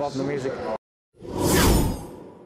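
A whoosh transition sound effect that swells up and dies away, with a deep rumble underneath. It comes in just after the sound cuts to silence for a moment.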